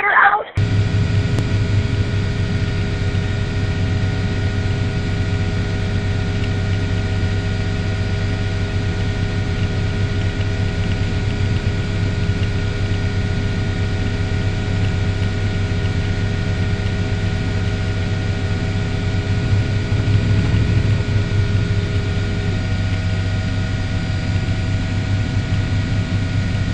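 Helicopter engine and rotor noise: a steady drone with a strong low hum and several steady whining tones above it.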